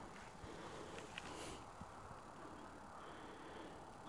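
Quiet outdoor background, close to silence, with a faint click about a second in and a faint steady high tone in the last second.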